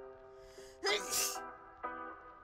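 A sneeze, about a second in: a faint breathy intake, then one loud, noisy 'choo' lasting about half a second, used as the sound of a cartoon cloud sneezing. Soft held musical chords sound before and after it.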